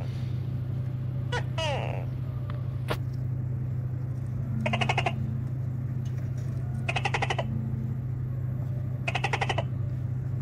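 Tokay gecko calling: a series of short rasping rattles, each about half a second long, repeated roughly every two seconds over a steady low hum. A brief falling squeak comes about one and a half seconds in.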